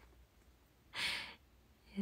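A woman's single short breathy exhale, a laughing sigh, about a second in, with quiet around it.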